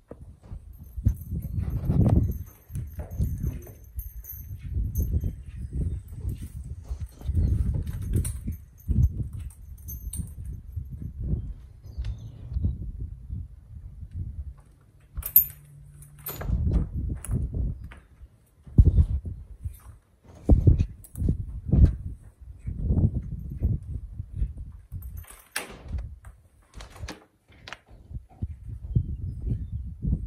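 Harnessed Belgian mules shifting and stamping their hooves on a dirt barn floor: a run of irregular dull thumps. Occasional short clinks come from the harness and trace chains.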